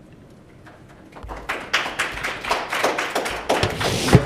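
A small audience clapping. It starts about a second in after a brief quiet and continues as a dense patter of claps.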